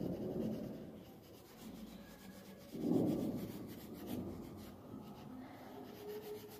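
Coloring in on a paper workbook page: uneven rubbing strokes of the colouring tool on paper, loudest about three seconds in.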